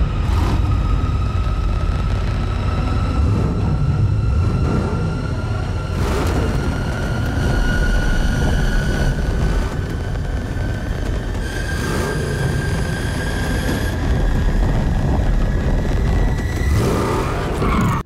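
Action-film soundtrack: a deep, continuous rumble under one sustained tone that slowly climbs in pitch, with heavy booms about every six seconds.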